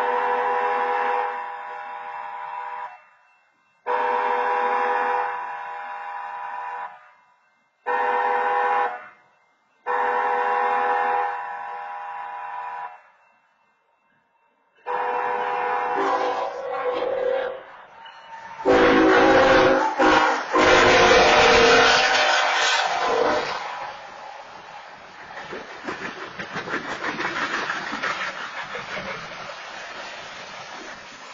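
Railroad crossing wayside horn sounding the long-long-short-long warning pattern in four steady blasts. From about 15 s, the approaching BNSF freight locomotive's own air horn sounds as well, loudest from about 19 to 23 s, and the train then runs through the crossing with a steady rumble and rush of wheels on rails. The locomotive sounds its horn because the wayside horn's confirmation light is dark.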